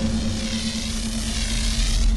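Logo sting sound design: a sustained airy whoosh with a shimmering high sweep over a steady low hum and a deep rumble.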